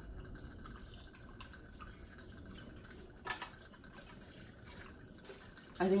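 Rum trickling from a bottle's pour spout into a blender jar of crushed ice, a thin steady pour. A short knock about three seconds in.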